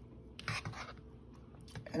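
Soft eating sounds over a bowl of creamy butter beans, with one short burst about half a second in.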